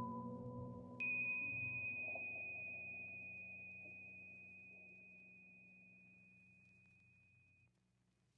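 Soft background music dying away. About a second in, a single high, pure chime is struck and rings on, fading out slowly over several seconds.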